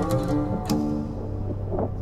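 Background music of plucked string notes ringing on, with a fresh pluck about two-thirds of a second in and a low held tone beneath.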